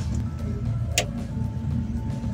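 A single sharp click about a second in: a Huper DLMS speaker-processor rack unit being switched on at its rear, powering up into its boot screen. Under it runs a steady low drone.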